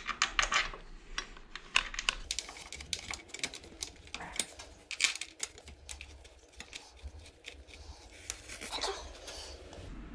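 A string of irregular small metallic clicks and clinks as steel bolts and a spanner are handled, while the front brake caliper's mounting bolts are put back in.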